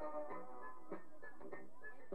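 Background music with sharp plucked notes on a regular beat, a little more than a second and a half of notes to each pulse, about every half second.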